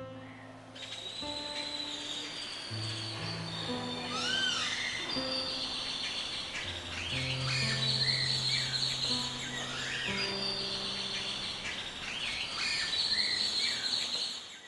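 Birds chirping and calling in short, repeated arching notes over background music of slow, sustained low notes.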